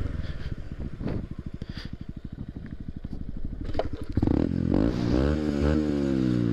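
Honda Grom's small single-cylinder engine running at low revs, then revving up about four seconds in, its pitch rising and falling.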